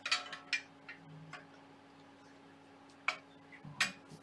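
Light metallic clicks and knocks of the Y-carriage plate and its linear bearings being handled and set onto the Y-axis smooth rods: a quick cluster at the start, then two sharper clicks about three seconds in and near the end.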